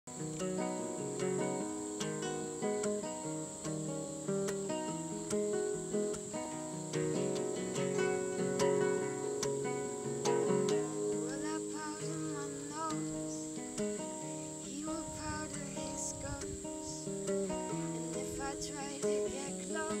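Nylon-string classical guitar fingerpicked in a repeating arpeggio pattern. Behind it is a steady high-pitched chirring of crickets.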